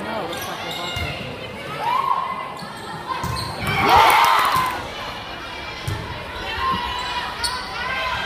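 Volleyball rally in a school gym: the ball struck with sharp hits several times, with shouts from players and spectators, the loudest shout about four seconds in, all echoing in the hall.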